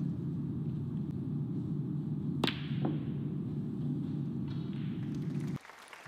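A sharp click of snooker balls striking each other about two and a half seconds in, with a fainter click just after, over a steady low arena hum that cuts off suddenly near the end.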